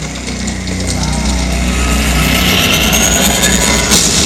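Water fountain jets starting up: a hissing rush that builds over the last two seconds and ends in a sudden loud burst as the jets shoot up, over a steady low rumble.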